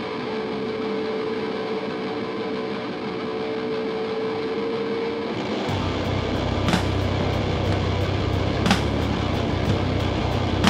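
Live rock band with distorted electric guitars: for about five seconds a long, steady held note sounds over the guitar wash with little low end. Then bass and drums come in, with sharp drum or cymbal hits every second or two.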